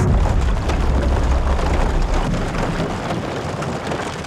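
A small open boat pushing through a partly frozen lake among broken ice: a loud, steady rushing noise with a heavy low rumble that starts abruptly and eases a little towards the end.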